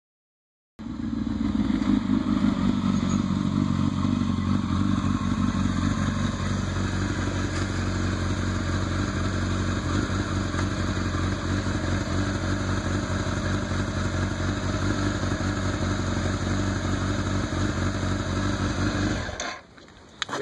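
A 2006 Kawasaki ZX-10R's inline-four engine runs as the bike rides up and stops, louder for the first few seconds, then idles steadily. It cuts off suddenly just before the end, as the engine is switched off.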